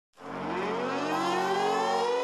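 Synthesized rising tone used as an intro sound effect: a rich pitched tone swells in quickly and glides slowly upward in pitch.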